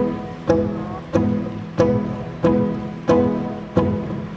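Solo acoustic guitar played fingerstyle in an even, slow pattern: a plucked chord about every two-thirds of a second, each one ringing and fading before the next.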